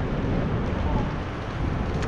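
Wind noise on an action camera's microphone while riding a bicycle: a steady, even noise heaviest in the low end.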